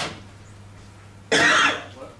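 A man coughing: a short, fainter burst right at the start, then one loud cough about a second and a half in.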